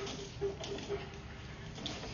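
Sewer inspection camera's push cable being pulled back through the drain line, with a handful of faint irregular clicks over a low rumble.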